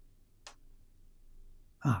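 A pause in an elderly man's speech: faint room noise, a single short high tick about half a second in, then a brief spoken "ah" near the end.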